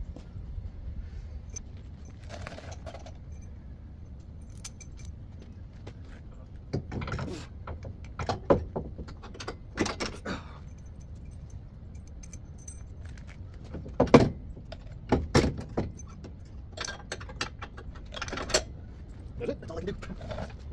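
Metal clanks, clinks and knocks as a steering rack-and-pinion is lifted up and fitted against the car's front crossmember, with the loudest clank about two-thirds of the way through.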